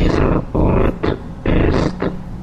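Three loud, guttural growls, each about half a second long, the last coming about a second and a half in.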